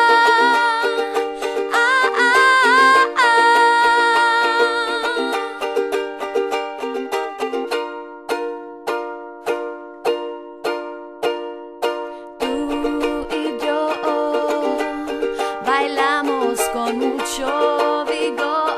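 Ukulele strummed under a woman's held, gliding sung notes. Midway the voice drops out and the ukulele plays alone in evenly paced strums, then the singing comes back in over it.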